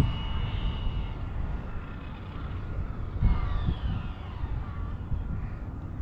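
Arrma Limitless RC speed-run car on 8S power making a speed pass: the high-pitched whine of its brushless motor and drivetrain fades in the first second, and a few falling whines follow about three seconds in as it slows in the distance, over a steady low rumble.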